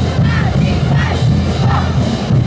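A group of tinku dancers shouting in chorus over loud parade band music with a heavy low beat.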